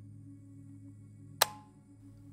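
Low, steady dark ambient music drone, with a single sharp click about one and a half seconds in.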